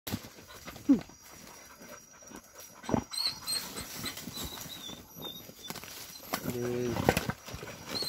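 Hunting dogs sniffing and scratching at an armadillo burrow, with a short falling yelp about a second in and another at about three seconds. Near the end comes a longer low pitched call.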